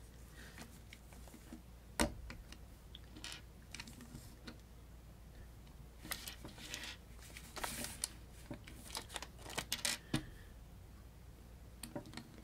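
Small plastic LEGO bricks clicking and tapping as they are picked up, set down and pressed together: faint scattered clicks, a sharper one about two seconds in, and a busier run of clicks in the second half.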